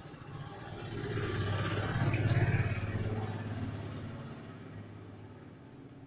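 A motor vehicle passing by: its engine sound grows louder to a peak a couple of seconds in, then fades away.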